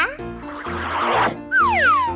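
Cartoon sound effects over cheerful children's background music: a hissing swoosh lasting about a second, then a falling whistle-like glide near the end.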